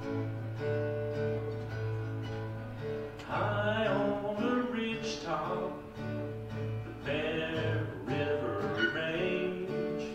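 Steel-string acoustic guitar strummed in a slow country song. A man's singing voice comes in about three seconds in, in two phrases over the guitar.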